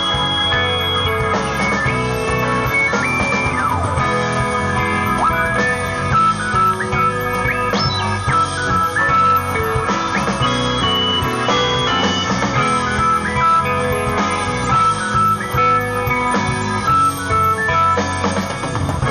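Live rock band playing an instrumental passage: guitars, bass and drums, with sustained lead notes that bend in pitch.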